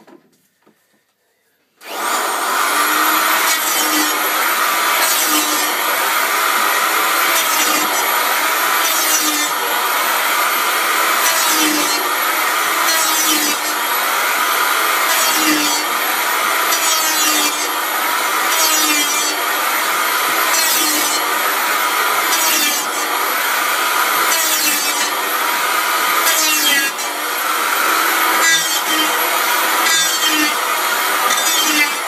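Handheld electric power planer starting about two seconds in and then running on, shaving a square maple cue-shaft blank. The cutting noise swells and eases in repeated passes, about one every one and a half to two seconds, over a steady motor whine.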